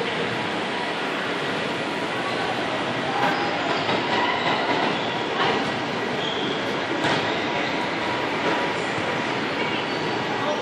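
Steady, echoing hubbub of a large indoor sports hall: distant children's voices and play blend into one continuous wash, with a couple of sharp knocks about halfway through.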